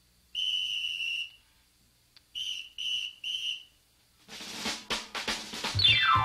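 A shrill whistle: one long note, then three short ones. About four seconds in a drum kit starts up, and near the end a falling glide leads into the band's next tune.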